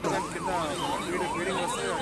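Emergency vehicle siren in a fast yelp, its pitch sweeping up and down about three times a second, over a crowd's voices.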